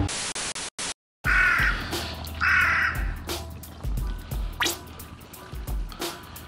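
Background music with a steady beat and edited-in sound effects. A short hiss-like burst cuts off, and after a brief silence come two harsh animal-call effects about a second apart. Then two quick rising swishes follow.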